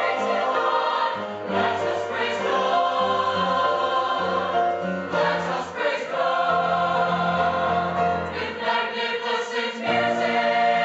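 Mixed choir of young men and women singing, holding sustained chords that change every second or two.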